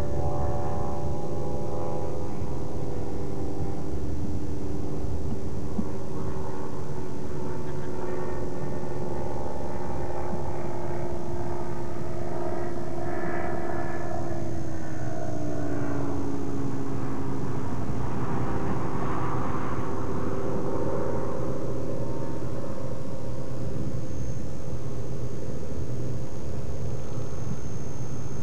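Avid light aircraft's engine and propeller droning steadily as the plane flies a short-field approach over the trees. About halfway through, the pitch falls and then holds lower.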